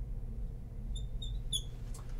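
Marker tip squeaking on a glass lightboard as a word is written: three short, high squeaks starting about a second in, over a steady low room hum.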